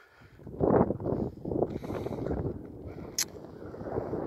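Wind buffeting the microphone in irregular gusts, with one sharp click about three seconds in.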